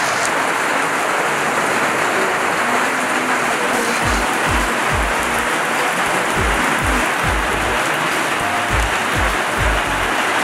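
Rain falling on wet pavement and puddles, a steady hiss. About four seconds in, music with a deep, regular bass beat comes in under it.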